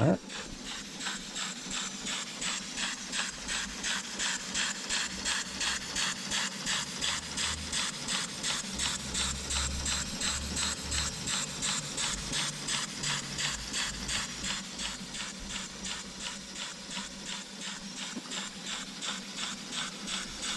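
Small German model steam engine with a slide valve running on low-pressure wet steam from a wallpaper stripper, giving a fast, even train of hissing exhaust puffs that fade a little towards the end. It seems to be working single-acting only, with power on just one stroke.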